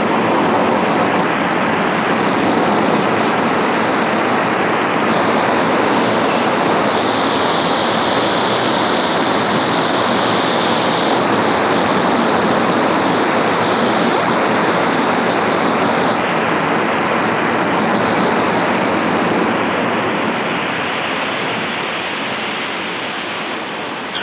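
Steelworks blast furnace noise: a loud, steady rushing din with no breaks, easing off slightly near the end.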